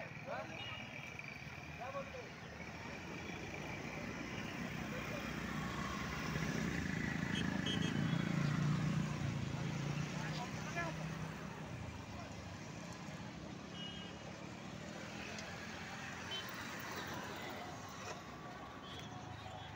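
Roadside traffic noise with people's voices in the background; a motor vehicle passes close by, growing louder to a peak near the middle and then fading away.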